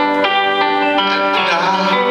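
Live band playing an instrumental passage between sung lines: guitar notes over sustained chords, with a wavering, sliding melodic line near the end.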